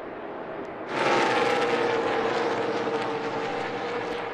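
A pack of NASCAR stock cars going by at racing speed. Their V8 engines come in loud about a second in, several engine notes together, sagging slowly in pitch as the cars pass.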